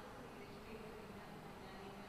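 Faint, steady buzzing hum over low background noise, with no distinct events.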